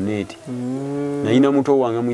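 A man's voice holding a long, level hum or drawn-out vowel for about a second, then going back into speech.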